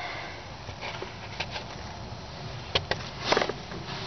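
Handling noise of a steel brake band being lifted out of a GM 4T40-E automatic transmission: a few light metal clicks, then one short louder noise about three seconds in.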